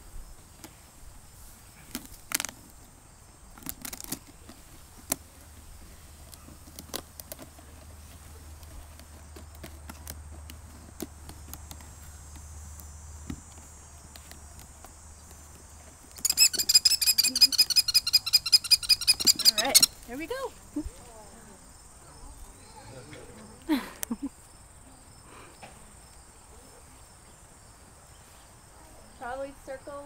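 American kestrel giving a rapid, shrill run of repeated 'killy-killy-killy' calls for about three and a half seconds, a little past the middle, over the steady high drone of crickets. A few sharp clicks come from the plastic carrier being handled.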